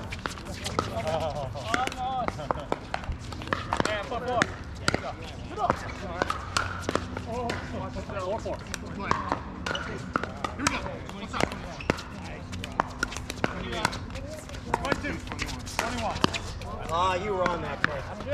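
Pickleball paddles striking a plastic pickleball during a rally: short, sharp hits coming irregularly, several seconds apart at times and in quick exchanges at others, over a steady background of voices.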